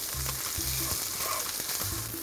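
Vegetables sizzling steadily in a hot skillet on medium-low heat while a wooden spoon stirs them around the pan.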